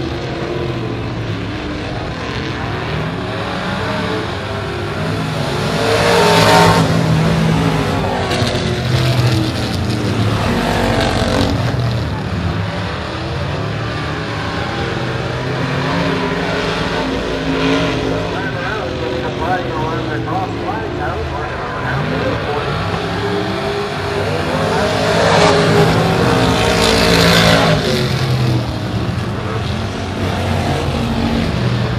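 Pure stock race cars running laps on a dirt oval, their engines rising and falling in pitch as they go round. The sound swells loudest as the cars pass close, about six seconds in and again between about 25 and 28 seconds.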